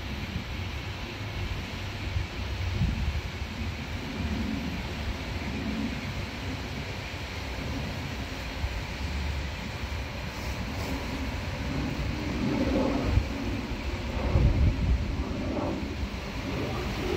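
Jet engines of a Boeing 737-700 airliner passing overhead on approach, a steady broad rumble. Gusts of wind buffet the microphone, strongest about three seconds in and again near the end.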